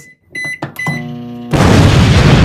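Microwave oven keypad beeping three times, then the oven humming as it starts up. About a second and a half in, a loud explosion cuts in and keeps going.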